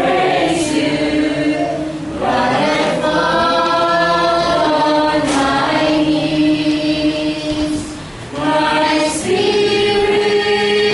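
Mixed choir of young men and women singing together in held notes, the phrases broken by short breath pauses about two seconds in and again about eight seconds in.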